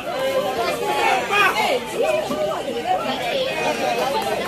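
Several voices shouting and chattering over one another, with calls rising and falling in pitch.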